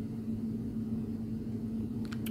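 Steady low background hum with one constant held tone and no other events.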